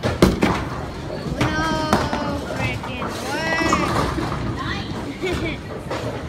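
Bowling-alley din: people's voices calling out over a steady low rumble, with a sharp knock just after the start and another about two seconds in.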